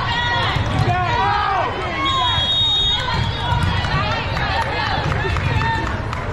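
Overlapping voices of spectators and players in a large indoor hall, with one short, steady, high referee's whistle a little over two seconds in, lasting under a second, signalling the serve.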